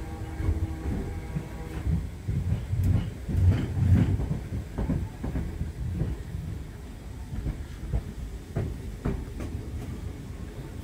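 Merseyrail Class 508 electric multiple unit heard from inside the carriage while running. The wheels rumble on the rails, with irregular clacks over rail joints, loudest about four seconds in.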